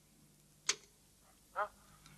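A cassette tape recorder's key clicks once, sharply, about two-thirds of a second in, over the faint steady hum of the tape starting to play; a brief pitched blip from the recording follows near the end.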